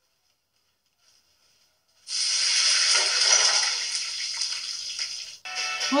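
A loud, hissing, rushing noise comes in suddenly about two seconds in after near silence, eases off slightly, then cuts off abruptly about five and a half seconds in. Music with singing follows.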